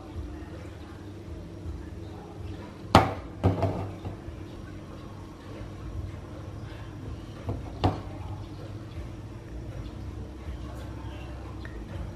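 A metal wok of melting sugar being shaken by its handles on a gas burner turned to full flame, giving three sharp knocks against the burner grate: two close together about three seconds in, and one near eight seconds. A steady low burner sound runs underneath.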